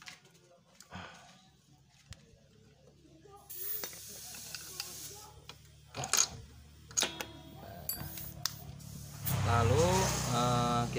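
Scattered small clicks and light metallic knocks from hands handling a scooter's rear brake cable and its fittings, with a hissing noise for a couple of seconds in the middle; a man's voice starts near the end.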